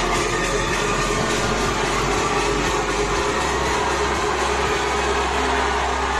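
A packed crowd at a loud music event in a hall: dense, steady crowd noise over a steady low bass, with no clear tune standing out.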